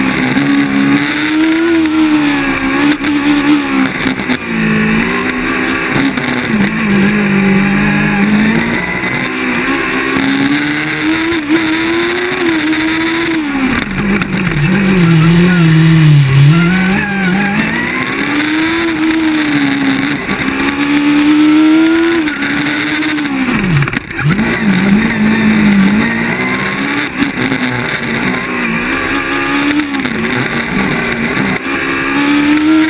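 Onboard sound of a Formula Student race car's engine at racing speed. The revs keep rising and falling as the car accelerates and brakes through the cone-lined corners. There is a sharp drop in revs about 24 seconds in.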